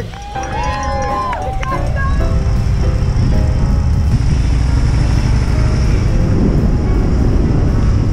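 Wind buffeting a bike-mounted camera's microphone while riding on the road, a steady low rumble with road noise. Voices are heard briefly in the first second or two.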